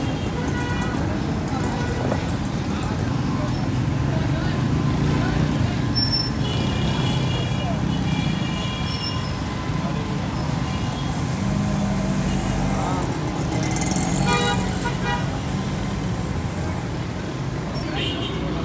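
Busy city street traffic: engines running under a steady rumble, with vehicle horns tooting, once about a third of the way in and again about three quarters of the way through.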